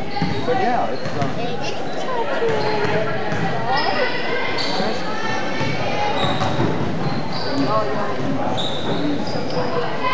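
Basketball game in a large echoing gym: a ball bouncing on the hardwood court, short high sneaker squeaks, and players and onlookers calling out throughout.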